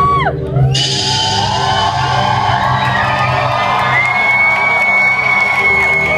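Electronic backing music from the DJ booth over the venue PA, a steady low held bass drone, with the crowd cheering and whooping from about a second in. A long high held tone joins near the end.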